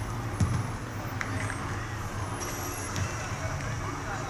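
Outdoor football-pitch ambience: a steady low rumble with faint distant voices, and a single thump about half a second in.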